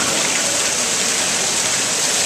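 Tiered fountain's water pouring off the rim of its bowl and splashing into the basin below, a steady rush.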